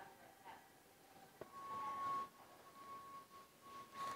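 Quiet big-box store ambience with faint handling noise. A light click about a third of the way in is followed by a brief rustle, then a faint steady high-pitched tone.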